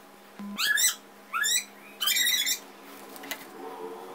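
Three short animal calls in quick succession, each sweeping in pitch, the last the longest.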